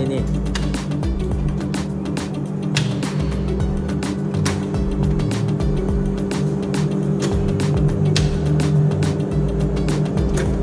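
A steady electrical hum from the switchgear, with irregular metallic clicks and knocks as an air circuit breaker is handled in its cassette.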